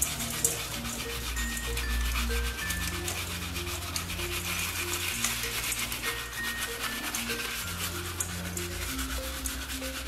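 Stiff fibre brush scrubbing the skin of a salted apple in quick, scratchy strokes, over background music with a simple melody of held notes.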